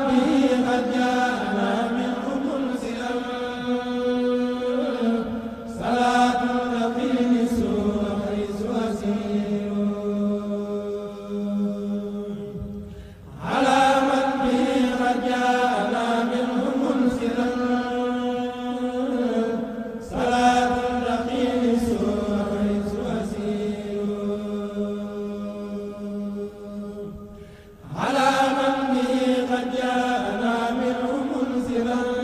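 A Mouride kourel of male voices chanting a khassida, a devotional Arabic poem, a cappella. The chant comes in long drawn-out phrases, each starting strongly and fading, with a new phrase starting about every seven seconds.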